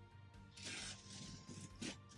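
Packing tape being peeled by hand off a cardboard box: a faint tearing rip starting about two-thirds of a second in and lasting under a second, with a shorter one near the end.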